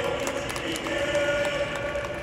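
Football stadium crowd chanting in unison, a steady sung chant with scattered handclaps.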